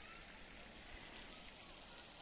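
Faint, steady splashing of a garden pond fountain, an even hiss of running water.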